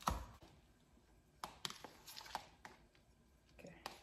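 A metal spoon stirring damp garri in a plastic tub: irregular clicks and taps of the spoon against the container, the loudest at the very start.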